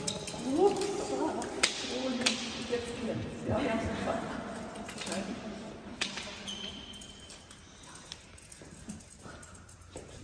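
Indistinct voices of a small group talking and murmuring in a reverberant hall, with scattered clicks and rustles; it grows quieter in the second half.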